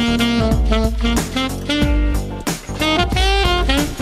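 Saxophone playing a jazzy melody of held and short notes, with some slides between pitches, over bass and drum accompaniment.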